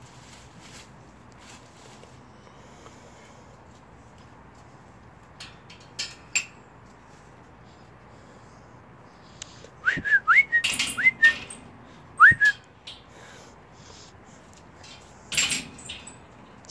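Several short, rising whistled notes, a person whistling to call a puppy, come in a cluster about two-thirds of the way through, mixed with brief rustles and clicks. Before that there is only a low steady background.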